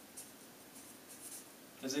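Felt-tip marker writing on flip-chart paper: a few faint, short, scratchy strokes as a word is written.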